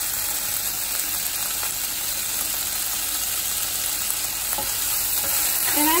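Vegetables sizzling in a hot nonstick wok as they are stirred with a spatula: a steady frying hiss.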